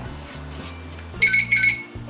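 Two short, high electronic beeps in quick succession about a second in, from the XEAM notte electric scooter as its fuse switch is turned on: the scooter's power-on signal.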